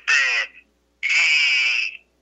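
A man's voice heard over a telephone line, making drawn-out hesitation sounds: a short one at the start and a longer one of about a second from about a second in.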